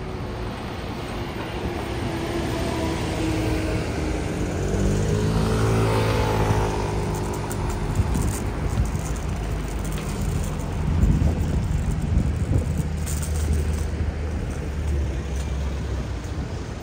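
City street traffic at a junction: a Mercedes concrete mixer lorry's diesel engine passes close about five to six seconds in, its pitch rising and then falling as it goes by, with cars and a van passing after it.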